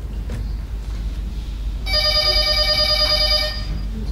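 A telephone bell ringing once, a trilling ring of about a second and a half beginning about two seconds in, over a steady low hum.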